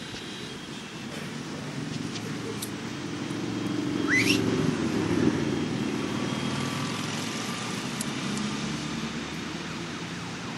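City street traffic noise that swells as a vehicle passes, loudest about four to five seconds in, with a brief high rising squeal at about four seconds.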